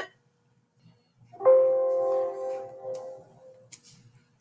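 Windows system alert chime sounding once as a Microsoft Word message box pops up, a single bell-like tone that starts sharply and fades over about two seconds. A few faint clicks follow near the end.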